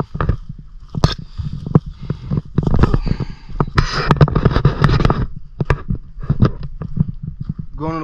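Wind rumbling on a handheld camera's microphone, with many short crackles of handling and brush rustle as the camera is carried along a path through dry grass. A voice starts near the end.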